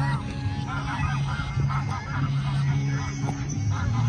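Geese honking over and over in short rising-and-falling calls as they squabble and chase each other on the water, over a steady low hum.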